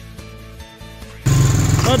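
Background music for a little over a second, then an abrupt switch to a loud, steady engine running close by, the vehicle the camera rides in.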